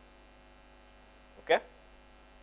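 Faint, steady electrical mains hum with many evenly spaced overtones. A single spoken 'Okay?' about one and a half seconds in is the loudest sound.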